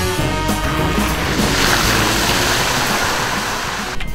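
Background music fades out in the first second and gives way to a loud, steady rush of heavy rain.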